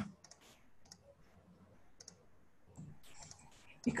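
A few faint, sharp clicks, spaced irregularly, over a quiet video-call line, followed by a soft faint rustle just before speech resumes at the very end.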